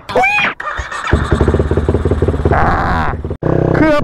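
Modified Honda Sonic motorcycle, bored out to 250 cc, with its single-cylinder four-stroke engine running and pulsing. A short vocal sound comes just before the engine, and the engine sound breaks off for an instant shortly before the end.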